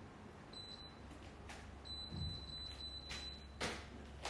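A steady, high-pitched electronic beep tone, sounding briefly and then again for about a second and a half, over a low hum, with a few soft knocks and a thump near the end.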